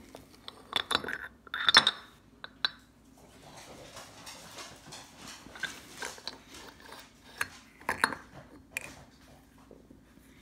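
Small metal knocks and clinks from a Mercury WMC outboard carburetor and its float bowl being handled and pulled apart: a cluster of clicks in the first two seconds, a faint rustle of handling in the middle, and a few more clinks near the end.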